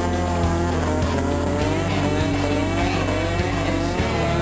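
Honda CRX engine held at high revs during a tyre-smoking burnout, its pitch wavering up and down, mixed with background music that has a steady bass.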